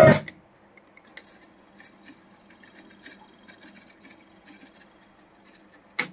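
Akai GXC-310D cassette deck: its playback of a song cuts off as the stop key is pressed. Then the transport runs faintly with light irregular ticking and a low hum, and a sharp key click sounds near the end.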